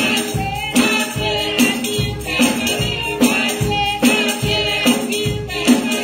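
Gospel song sung by a group of voices, with a tambourine struck and shaken on a steady beat.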